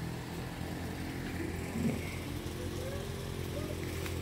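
A vehicle engine idling steadily, a low even hum, with faint voices in the background.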